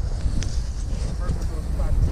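Wind rumbling on the microphone, with a faint voice in the background in the second half.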